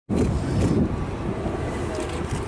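Airbus A330-200 jet engines running at low thrust as the airliner taxis: a steady low rumble.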